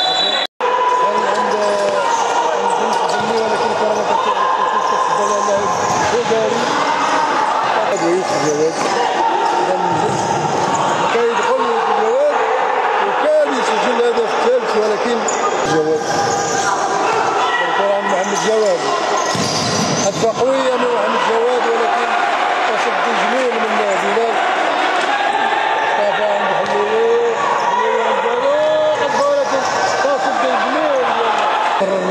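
Futsal match on a hardwood indoor court: repeated sharp knocks of the ball being kicked and bouncing on the floor, short squeaks of players' shoes and raised players' voices, echoing in a large hall.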